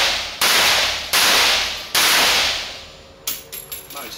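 VHS bullpup assault rifle firing in an enclosed indoor range booth: three loud reports roughly three-quarters of a second apart, each ringing on in the booth. Light clicks of the rifle being handled follow near the end.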